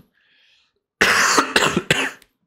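A man coughing into a close microphone: a short burst of a few coughs beginning about a second in, after a near-silent first second.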